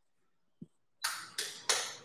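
Chalk scraping on a blackboard in three quick strokes about a second in, drawing arrows on the board. A soft low knock comes just before.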